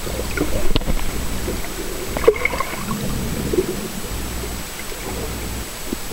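Underwater sound picked up by a submerged camera: a low, muffled rumble of moving water with scattered clicks and crackles, two sharper clicks within the first few seconds.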